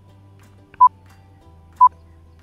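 Countdown timer sound effect: short, high electronic beeps, one a second, two in this stretch, over faint background music.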